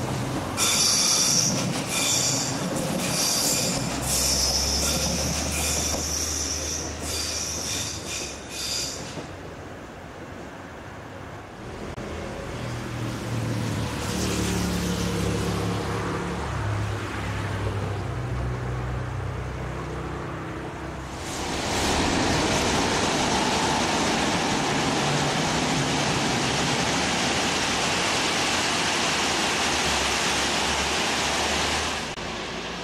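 Trains in a railway cutting. First a red DB regional multiple unit runs past with high-pitched, flickering wheel squeal over a low hum. After a quieter stretch with low tones that shift in steps as another train comes near, a passenger train passes close by from about twenty seconds in, with a loud, steady rush of rolling noise.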